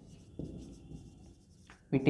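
Marker pen writing on a whiteboard: faint strokes, one starting suddenly about half a second in and fading.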